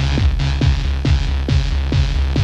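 Early-1990s techno in a DJ mix: a steady four-on-the-floor kick drum, a little over two beats a second, over a sustained deep bass line, with hi-hat strokes between the kicks.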